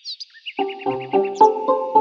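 Birdsong-like chirps, then light background music starting about half a second in: short, evenly spaced notes at about three or four a second.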